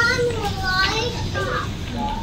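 A young child's high-pitched voice calling out a couple of times without clear words, over a low hum of background chatter.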